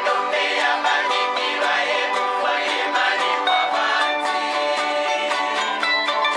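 Several acoustic guitars played together, picking and strumming in a fast, even rhythm without a break.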